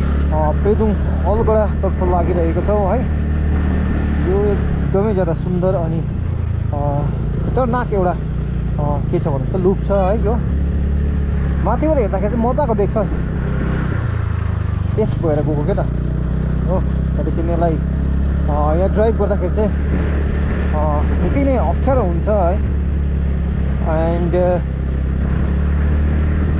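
Steady low rumble of a motorcycle engine and wind noise while riding, dipping briefly about halfway through. A man's voice, talking or singing, comes and goes over it.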